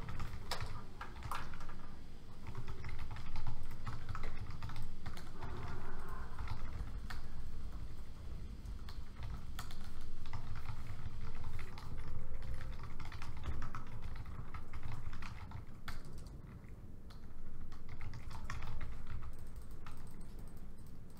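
Typing on a laptop keyboard: irregular runs of keystroke clicks over a steady low rumble.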